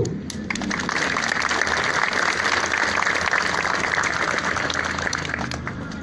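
Crowd applauding. The clapping starts about half a second in, holds steady, and dies away near the end.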